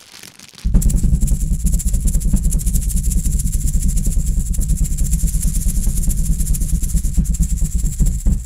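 A loud, steady mechanical rattle like a running engine, made of very rapid clicks over a low rumble, starts suddenly about a second in and keeps going evenly.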